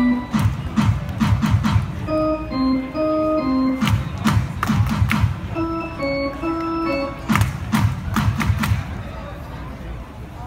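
Ballpark organ playing short phrases of held notes between pitches. Each phrase is followed by a run of sharp rhythmic beats.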